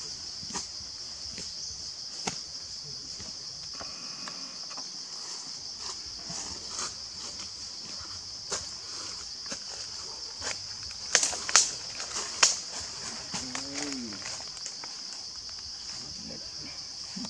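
Steady high-pitched drone of insects in the forest, with scattered sharp clicks and a louder burst of clicks about two-thirds of the way through.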